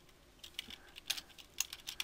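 Computer keyboard being typed on: a faint run of separate quick keystrokes, starting about half a second in.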